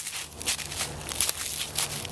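Footsteps on dry fallen leaves and twigs: a few irregular crackling steps.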